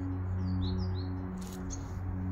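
Ambient background music with a steady low held drone, and a few short high bird chirps in the first half.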